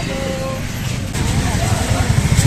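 Busy street noise: a steady low traffic rumble with background crowd chatter, the rumble growing louder after about a second.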